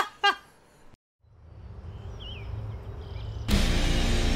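A laugh cuts off, a low rumble swells up after a short silence, and heavy electric-guitar music starts loudly about three and a half seconds in.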